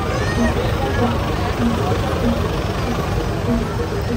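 Street-procession din: motorbike and truck engines running close by under a babble of crowd voices, with a short low note repeating evenly about every 0.7 s, the beat of the accompanying music.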